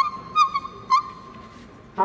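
A hand whistle blown into cupped hands plays a few short ornamented notes of a shepherd's tune, then dies away about a second and a half in. A wooden shepherd's horn begins a loud, steady note right at the end.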